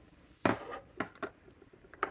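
Fountain pens being set down on a desk and knocking against each other: one sharper click, then a few lighter taps.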